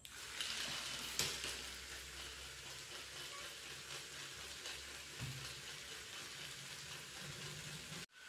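Small battery-powered geared DC motor of a homemade toy tractor running steadily as it drives its wheels across a laminate floor, a faint, even whirring hiss with a low hum beneath. A sharp click about a second in.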